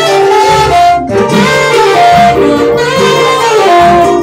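Saxophone playing a melody of held and moving notes, played live with a band accompaniment of strummed acoustic string instruments.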